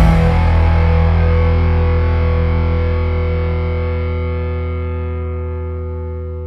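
Rock music: a distorted electric guitar chord struck once and left to ring, fading out slowly.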